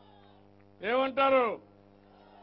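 A man's voice over a public-address system saying one short, loud phrase about a second in, between pauses. A steady electrical hum runs through.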